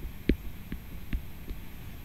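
A handful of light, irregular taps and knocks of a pen on a writing surface, picked up by a desk microphone over a low hum, as the handwritten drawing is filled in.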